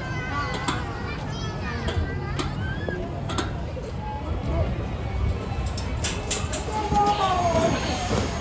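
Children's high voices and squeals over general chatter outdoors, with a few sharp clicks or knocks in the first half.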